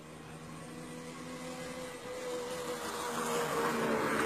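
An engine running with a steady hum that grows gradually louder.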